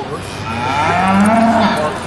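A heifer mooing once: one long call of about a second and a half, starting about half a second in.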